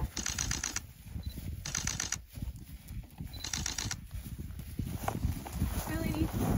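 A camera shutter firing in rapid bursts: three short runs of quick, even clicks, each about half a second long, a second or so apart.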